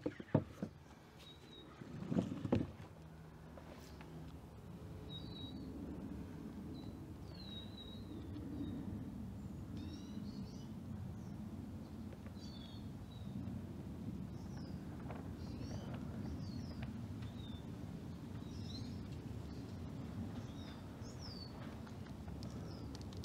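Small birds chirping in short high calls, about one a second, over a steady low background rumble. A few sharp knocks come in the first three seconds.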